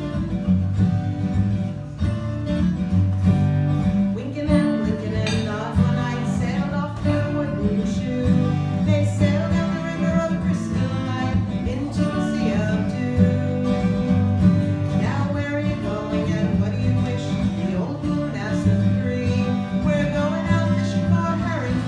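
A live folk song on acoustic guitar, strummed from the start, with a singing voice coming in about four or five seconds in.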